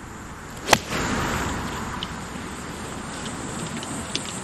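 A golf iron strikes the ball on a full approach swing: one sharp click about three-quarters of a second in. A steady rushing noise follows and slowly fades.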